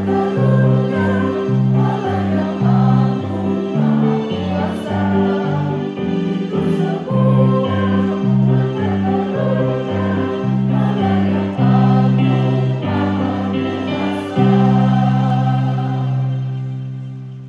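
A group of voices singing a hymn together over instrumental accompaniment, its bass notes stepping in a steady rhythm. Near the end the song settles on a long held final chord.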